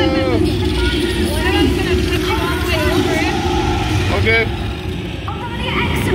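A steady low rumble with short, high gliding calls or cries over it, repeating every second or so.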